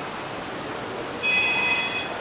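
A high electronic phone ring, one steady tone about a second long starting just past halfway, over a steady hiss of room noise. It sounds as the pretend phone call to the pizza shop begins.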